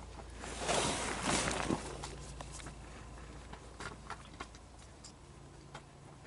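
Soft rustling and a few faint clicks of hand work as a spring-loaded aluminum oil drain plug is pushed up and threaded back in by hand, with the louder rustling about a second in.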